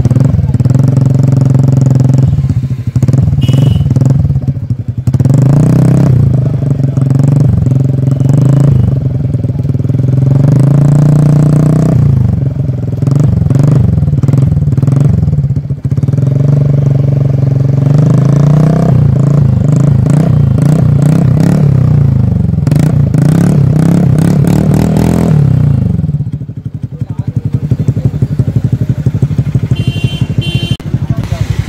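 TVS Ntorq 125 scooter's single-cylinder four-stroke engine revved over and over, its pitch rising and falling every few seconds, through a bare exhaust pipe with the silencer off. It settles back to idle about 26 seconds in.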